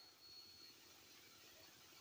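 Near silence: a pause between phrases of a man's speech over a public-address microphone, with only faint hiss.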